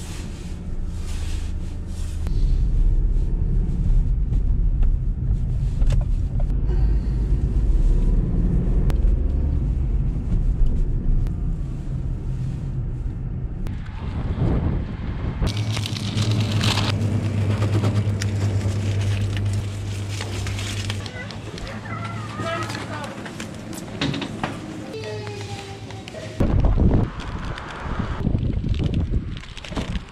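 Low engine and road rumble inside a Ford Fiesta's cabin as it drives off. About halfway through it gives way to a steady hum in a shop, with paper bags rustling.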